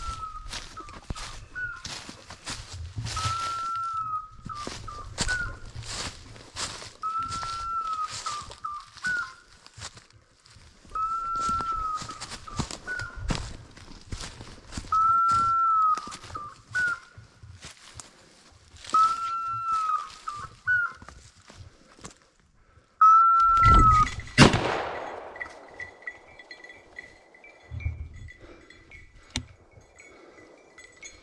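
Footsteps crunching through dry leaves and brush, with an electronic dog beeper collar sounding one short, identical tone about every four seconds. About 24 seconds in, a single very loud shotgun shot rings out and fades away.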